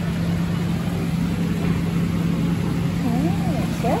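Steady low mechanical hum with a constant background hiss, stopping abruptly at the very end.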